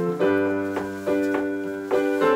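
Yamaha electronic keyboard playing a repeating chord vamp, the chords struck about twice a second.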